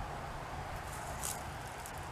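Low, steady outdoor background rumble in woodland, with one brief rustle, like a footstep in dry leaves, a little over a second in.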